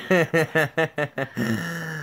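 Laughter: a quick run of about seven short 'ha' pulses, then a longer drawn-out laughing sound.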